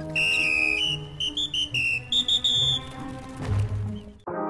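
A quick run of short, high whistled notes stepping up and down in pitch, over low background music, with a brief low rumble near the end.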